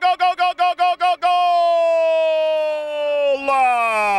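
A man's voice shouting a goal call: rapid repeated 'go' syllables for about a second, then two long held cries, each falling in pitch.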